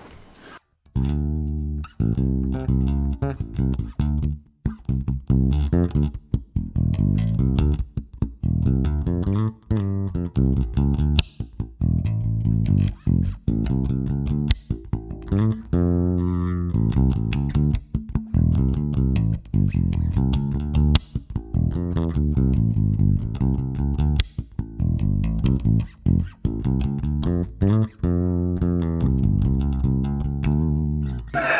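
Ibanez ATK810 electric bass played fingerstyle, a busy run of plucked notes starting about a second in, with the back pickup selected, the switch in the centre position and the controls set flat.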